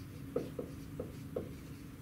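Marker writing on a whiteboard: four short strokes spread over about a second, over a steady low hum.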